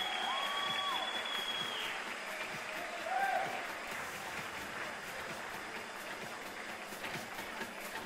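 Audience applauding after the winning couple is announced, with a long high whistle over the applause in the first two seconds and a short call about three seconds in. The applause dies down, thinning to scattered claps near the end.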